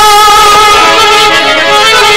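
Harmonium playing a melody of sustained reed notes, the held tones shifting to new, lower notes about a second in.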